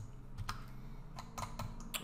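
Irregular clicks of a computer keyboard and mouse, about eight in two seconds, over a low steady hum.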